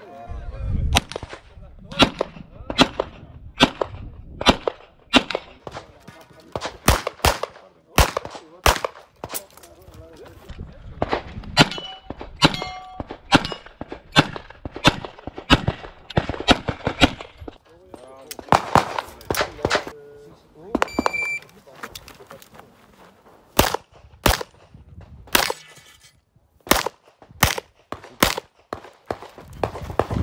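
Handgun shots fired in quick irregular strings and pairs, with short pauses between strings, as a competitor shoots a practical-shooting course of fire. About two-thirds of the way through, a short steady tone sounds, followed by a brief lull before another string of shots.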